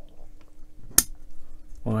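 A single sharp click, about halfway through, as a small model part is pressed into place against a metal chassis beam.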